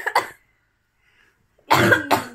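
A person coughing: a couple of short bursts at the start, a pause of near silence, then a loud cough near the end.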